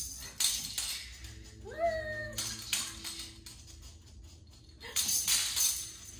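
Plastic baby rattle toy shaken in short bursts of rattling, with a baby's brief high squeal that rises and then holds, about two seconds in.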